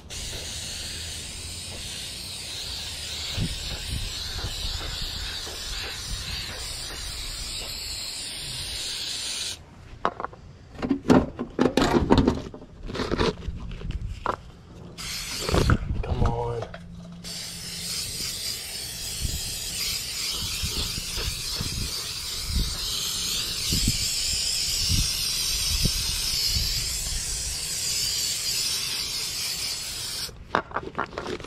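Aerosol spray adhesive hissing steadily out of a can onto fibreglass insulation. The spraying breaks off for several seconds in the middle, with knocks and handling noises, then starts again and runs on.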